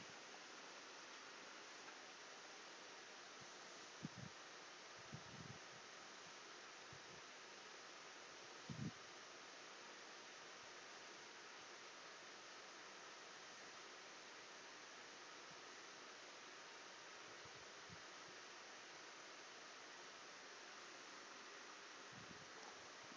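Near silence: a steady microphone hiss, with a few faint, short low thuds about 4, 5 and 9 seconds in.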